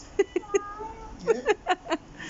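A young child's high-pitched voice in short squeaky bursts, with a longer gliding note in the middle.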